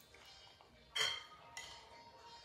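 A metal fork clinks once against a ceramic bowl about a second in, with a short ring as it dies away.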